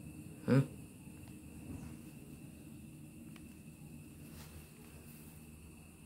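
A short murmured 'hmm' about half a second in, then quiet room tone with a faint steady high-pitched whine and a couple of faint ticks.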